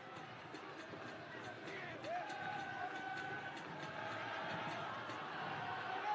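Faint football stadium ambience: a steady murmur with distant, drawn-out shouting voices from around the pitch, a little louder from about two seconds in.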